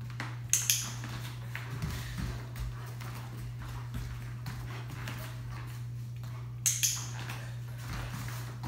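Two sharp double clicks, one about half a second in and one near the end, each a quick click-click, over a steady low hum and faint knocks of movement on the mats.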